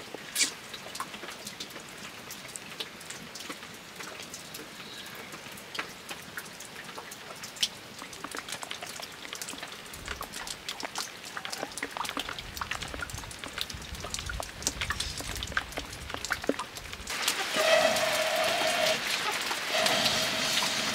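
Scattered light ticks and clicks over a faint hiss. About seventeen seconds in, a much louder steady rushing blow with a whistling tone sets in: breath blown through a blowpipe into a wood fire to fan the embers. It breaks briefly and then resumes.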